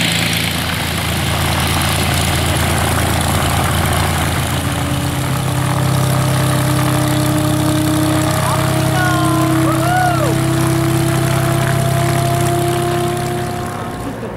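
Single-engine light aircraft's piston engine and propeller running at low power on the ground: a steady low drone, with a thin whine joining about a third of the way in and rising slightly in pitch.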